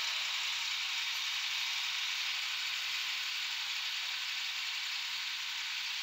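Tractor diesel engine running steadily, heard as an even, hiss-like noise with little low rumble.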